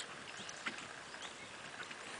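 Quiet outdoor field ambience, a faint steady hiss with a few soft, irregular ticks.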